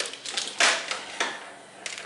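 Light clicks and a brief rustle from a wiring harness being pushed through a golf cart's plastic body panel, its connectors tapping against the plastic. The rustle comes a little over half a second in, with a few scattered clicks after it.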